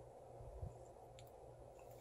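Near silence: faint room tone with a low steady hum, a soft thump about two-thirds of a second in and a faint tick a little after one second.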